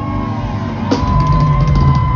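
Live band music through a concert PA: drum kit and bass with keyboards. A drum hit comes about a second in, followed by a long held high note.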